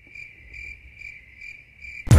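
Insect chirping: a steady high trill that swells about every half second, over a faint low rumble.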